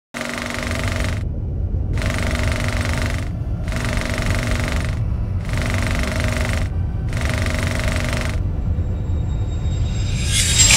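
Logo-intro sound design: a steady low rumble under five rattling, machine-like bursts of about a second each, with short gaps between them. The bursts stop about eight seconds in, leaving the rumble.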